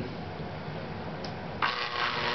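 A double-shafted 120-volt fan motor switched on about one and a half seconds in, then running with a steady electrical hum. It is drawing about three times its rated current.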